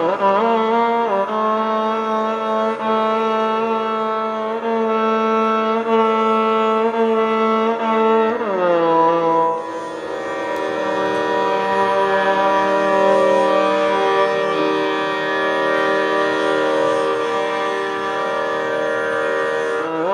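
Three violins playing Carnatic music together: ornamented notes that waver in pitch, a downward slide about eight seconds in, then long held notes.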